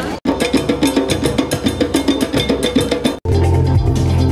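Drums and other percussion playing a quick, even beat, cut off suddenly about three seconds in and followed by music with a heavy bass.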